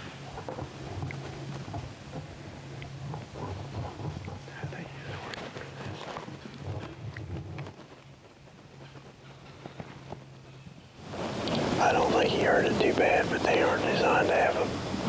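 Low outdoor background of rustling with a faint steady hum and a few light clicks, then a man talking loudly from about eleven seconds in.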